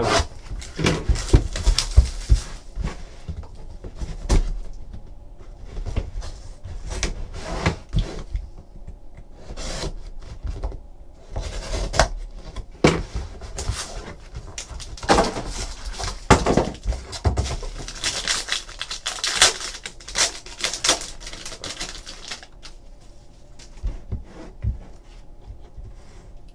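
A trading-card box being unsealed and opened by hand: a box cutter slitting the plastic wrap, then cardboard and plastic wrapping rustling, scraping and tapping in irregular bursts.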